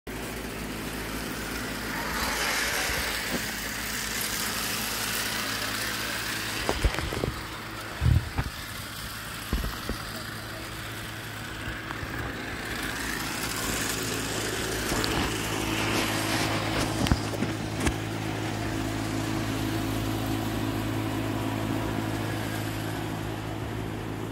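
Battery-powered flex-track toy train running on plastic flexible track, its small electric motor giving a steady hum and whir. A few sharp clicks and knocks come through the middle.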